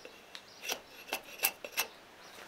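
A drawknife shaving a wooden hammer handle: about four short scraping strokes of steel across wood, the loudest in the second half.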